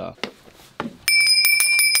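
A high, bell-like ring struck rapidly several times, starting about a second in and lasting about a second. It is the loudest sound here and comes after a couple of short clicks.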